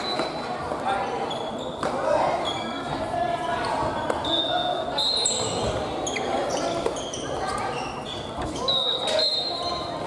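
Family badminton play in a large, echoing gym hall: short high squeaks of sneakers on the wooden floor, sharp taps of rackets hitting shuttlecocks, and a background hum of many players' voices.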